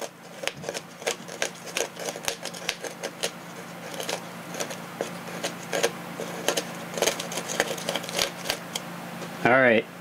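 Hobby knife blade chiselling and prying small pieces out of a recess cut in a model airplane wing: a run of irregular light clicks and crackles as bits break loose, over a faint steady hum.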